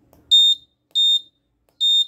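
Piezo buzzer on an Arduino board giving three short, high beeps about 0.7 s apart, one with each push-button press as the reminder time is stepped up.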